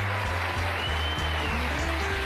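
Band playing upbeat walk-on music with a bass line stepping from note to note, over audience applause.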